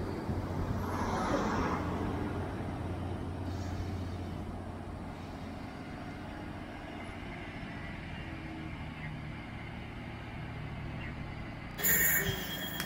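Class 769 bi-mode train pulling away on its diesel engines, a steady low drone that fades as it leaves, with a brief hiss about a second in.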